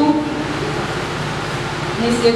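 Steady, even rushing noise with no distinct events; the last of a woman's voice trails off at the very start.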